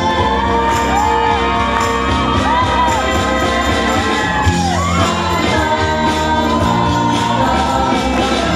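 Live band playing an upbeat gospel-rock song with a steady beat, and a male lead voice singing long gliding notes over it. Crowd noise sits under the music.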